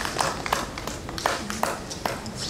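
Applause thinning out to scattered single hand claps, a dozen or so separate claps dying away.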